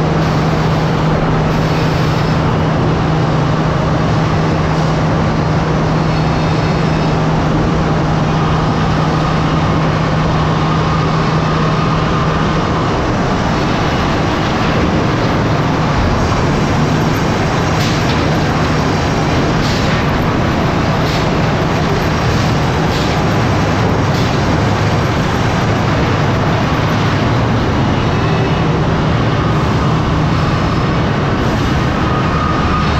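Large sawmill machinery running: a loud, steady mechanical din of chain conveyors, roll cases and saws. A steady hum underneath stops a little before halfway, and a few light knocks come later.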